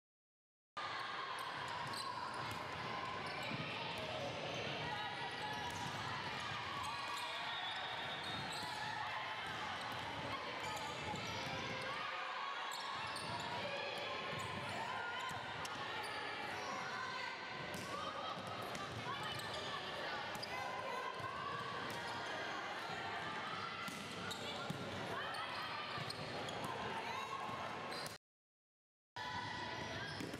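Volleyball play in a large gym: repeated sharp slaps of the ball on players' forearms and hands, amid indistinct shouts and chatter of players.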